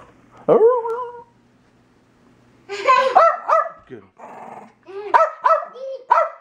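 Small dog barking loudly in quick bursts of short, high-pitched barks: one call about half a second in, a cluster around three seconds in, and another near the end.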